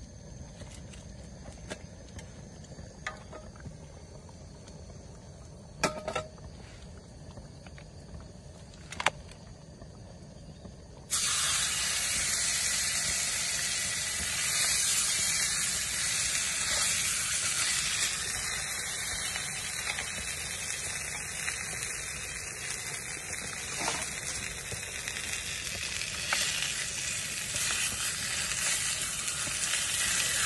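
Food frying in a pan on a camping stove. The first part is fairly quiet with a couple of light knocks, then about eleven seconds in a loud, steady sizzle starts abruptly and keeps going.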